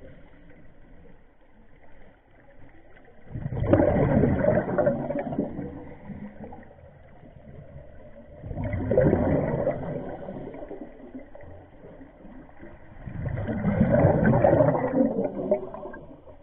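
Scuba regulator exhaust bubbles heard underwater: a diver exhaling three times, each breath a gurgling rush of bubbles lasting a couple of seconds, about five seconds apart.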